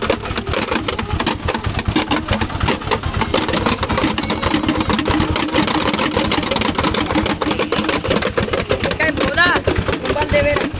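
Several homemade whirling bottle toys (plastic bottles on strings whirled around hand-held sticks) making a dense, continuous rasping buzz together.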